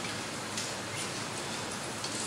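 Steady hiss of room noise with a few faint clicks.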